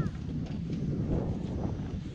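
Wind buffeting the microphone: an uneven low rumble without words.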